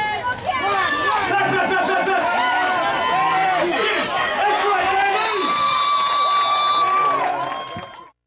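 Sideline spectators shouting and cheering over one another during a football play, with one long, steady high-pitched cry about five seconds in.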